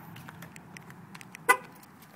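A Mitsubishi Eclipse Spyder's horn gives one short chirp about a second and a half in, the kind of chirp a car makes when it is locked with the key fob. A faint low hum and a few light ticks lie under it.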